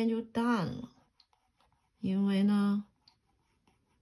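A person's voice: a short falling utterance at the start, then a steady held vocal sound of under a second about two seconds in. Between them are a few faint light ticks of a stylus tip on tablet glass.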